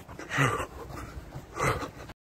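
A man's heavy, voiced breaths while running: two panting exhalations about a second apart. He is out of breath late in his run.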